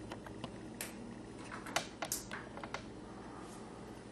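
Irregular light clicks and taps from an audiometer's buttons and attenuator dial being worked as a test tone is set and presented, about ten in four seconds.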